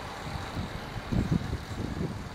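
Outdoor background noise: a low, uneven rumble with no distinct events.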